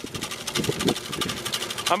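BOSS TGS 600 tailgate salt spreader running, its spinner flinging rock salt with a fast, even clatter.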